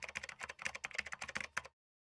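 Rapid keyboard typing sound effect, a quick run of keystroke clicks that stops abruptly shortly before the end, accompanying on-screen text typing itself out.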